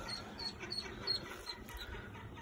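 Faint duck calls: a short high note repeated several times a second, from the ducks being rescued from the storm drain.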